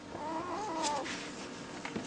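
Newborn German Shepherd puppy crying: one short, wavering mewing squeal lasting under a second.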